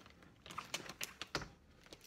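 Telescoping pull handle of a Brighton rolling carry-on being drawn up out of the bag: a quick run of sharp clicks and rattles about half a second in, the loudest near the middle as the handle extends.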